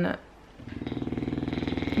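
A large dog snoring: one long, rough, fluttering breath that grows steadily louder.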